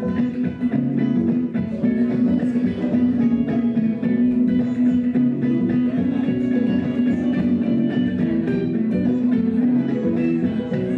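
Guitar playing an instrumental passage of an Irish traditional tune, built up in layers on a loop station, with a steady held low note underneath the plucked notes.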